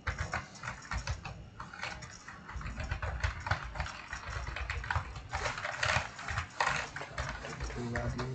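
Typing on a computer keyboard: quick runs of keystroke clicks, with short pauses between the runs.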